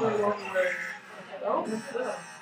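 Indistinct, overlapping voices of several people talking in a room.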